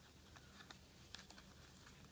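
Near silence with a few faint ticks and rustles as young coconut-leaf strips are pulled through a woven ketupat casing.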